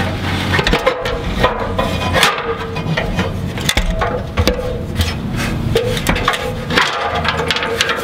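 Irregular knocks and clatter of feet and hands on a ladder as someone climbs down it onto gravel, with handling noise close to the microphone, over a steady hum.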